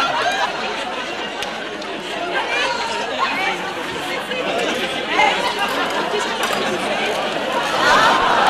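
Many voices chattering at once, an unbroken babble with no single clear speaker.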